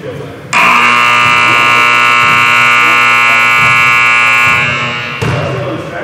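Electric gym buzzer sounding one long, steady, harsh tone. It starts abruptly about half a second in, holds for about four seconds, then fades out.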